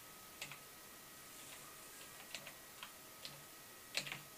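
Computer keyboard keys tapped at an irregular pace, about nine sharp clicks, as text is typed into a form. A faint steady electronic whine sits beneath.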